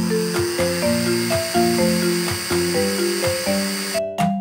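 Cheerful children's instrumental music with a stepping melody, over the steady high whir of an electric blender running.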